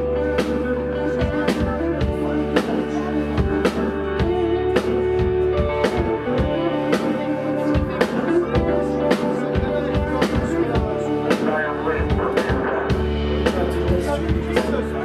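Live rock band playing: electric guitar with sustained notes over a drum kit keeping a steady beat.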